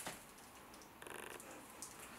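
A jacket's front zip being pulled briefly about a second in: a short rasp of rapid fine clicks lasting under half a second, over faint room tone.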